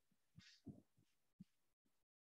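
Near silence: a few faint, short low thuds and a brief faint hiss about half a second in.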